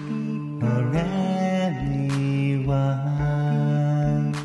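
Live looper music: layered, sustained vocal harmonies held as chords and gliding between notes, over a steady beat of low kick thumps and a few sharp snare-like hits.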